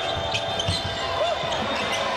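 A basketball being dribbled on a hardwood court floor, a string of short thuds over steady arena background noise.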